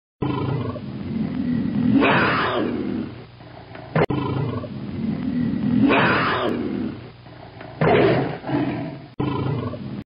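A big cat's roar, sounded three times: loud roars about two, six and eight seconds in, with lower growling between them. The first two roars sound identical, a recorded roar played again, as in a film-studio logo intro.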